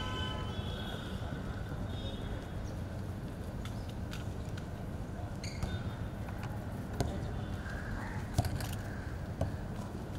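Outdoor background noise, a steady low rumble with faint voices, and a football being kicked, with sharp knocks about seven and eight and a half seconds in.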